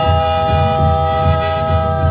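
Accordion holding a sustained chord over a steady low beat, as part of a piece of music.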